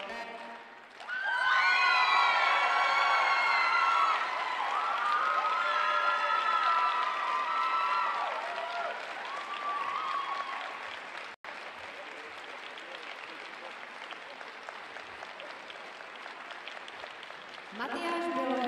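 Arena crowd applauding and cheering, with many voices calling out over the clapping for the first several seconds. After a momentary break in the sound about eleven seconds in, the applause goes on more quietly and evenly.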